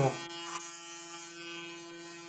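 Electric hair clipper running with a steady buzzing hum.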